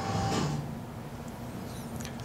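A played video's soundtrack fades out about half a second in, leaving room noise with a faint steady low hum.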